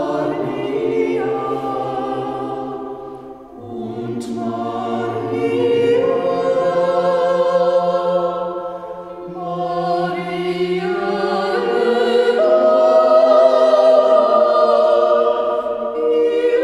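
A group of voices singing slowly in long held phrases, with short breaks about 3.5 and 9 seconds in and the loudest passage near the end.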